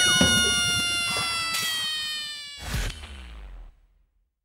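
End of a cartoon-style outro music sting: one loud held sound of many tones together sags slightly in pitch and fades out. A brief second swell comes about two and a half seconds in, and the sound stops just before the end.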